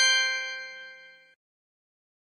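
Quiz app's correct-answer chime: a bright, bell-like ding of several tones that fades over about a second and a half, then cuts off.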